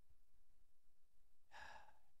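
Near silence of a microphone's room tone, with one short breath from the host near the end.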